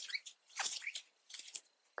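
Soft scratching and rustling of acrylic yarn being worked with a metal crochet hook, in a few short bursts as treble stitches are made into a chain space.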